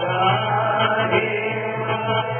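Devotional chanting (kirtan) with music, continuous and sounding muffled.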